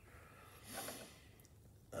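A short, faint breath out through the nose, about half a second long, a little over half a second in.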